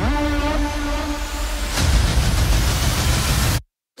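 Cinematic trailer sound design: a low tone glides up and holds over a dense, heavy rumble, with a hard hit about two seconds in, then everything cuts off abruptly to dead silence shortly before the next line.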